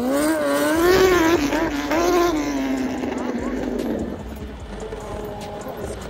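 A small motorcycle riding along a dirt road. Over it, a long wordless voice wavers up and down in pitch for about four seconds, then fades.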